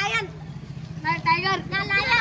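Boys' voices talking and calling out in short bursts, over a steady low hum.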